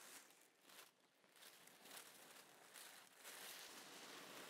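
Faint rustling of wedding dress fabric and tissue paper being handled, in several soft swishes.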